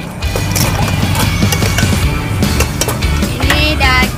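A metal spoon clacking repeatedly against a stainless-steel mixing bowl as a salad is tossed, in irregular sharp clicks over background music and a steady low hum.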